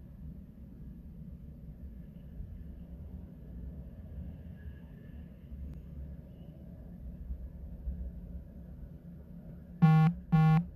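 Low, steady rumble of streetcars rolling past on their tracks, muffled through a closed window. Near the end a horn sounds twice in short blasts.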